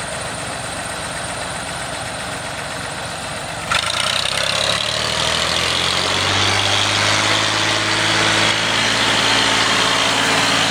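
Farm tractor's diesel engine running as the loaded tractor drives along a dirt track. A little under four seconds in, the sound jumps abruptly louder, and after that the engine's steady note comes through clearly and grows slowly louder.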